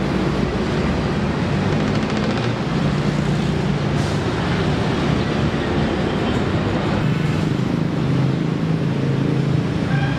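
Steady low rumble of city road traffic, with no distinct single events standing out.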